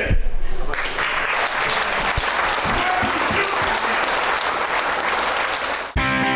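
Audience applauding steadily, the clapping loudest in the first second.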